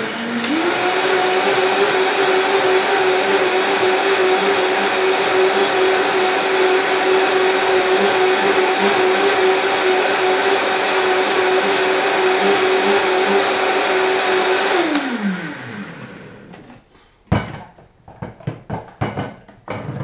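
Vitamix high-speed blender motor spinning up to a steady high speed and running evenly for about fifteen seconds, blending soaked cashews and water into smooth nut milk, then winding down. A sharp knock follows a couple of seconds later, then a few lighter clicks.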